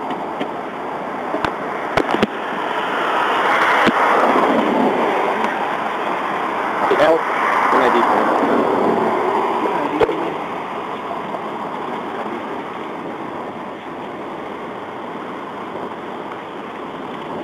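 Traffic noise swells and fades twice as vehicles pass, with muffled, indistinct talk and a few sharp clicks.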